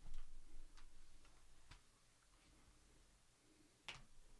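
Faint, irregularly spaced clicks and light taps of a trading-card box being handled as it is opened.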